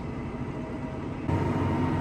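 Tractor engine running steadily, heard from inside the cab while pulling a planter. A little over a second in, the rumble turns abruptly heavier and lower.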